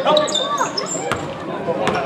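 Basketball being dribbled on a hardwood gym floor, with sharp bounces about a second in and near the end, among short high-pitched sneaker squeaks.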